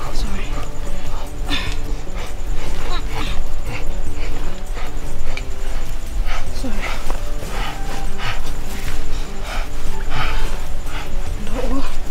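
A person crying and whimpering in short sobs and wails over a steady background music score.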